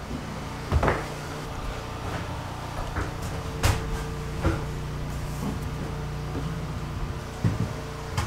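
A few sharp knocks and clunks of handling while a corded work light is moved and hung: one about a second in, the sharpest just before the middle, another soon after, and one near the end. A steady low hum runs underneath.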